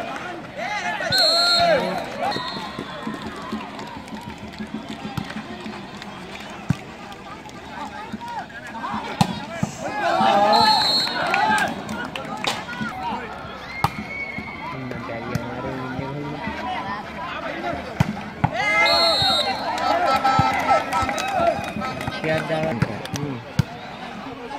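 Spectators shouting and cheering in loud bursts, near the start, about halfway through and again near the end, with sharp smacks of the volleyball being hit during the rallies.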